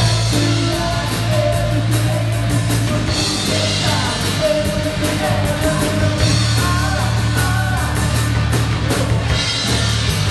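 Live rock band playing: distorted electric guitar, electric bass and a drum kit, with a male lead vocal singing over them.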